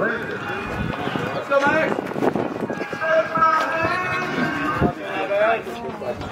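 Indistinct voices of several people talking, overlapping at times, with no clear words.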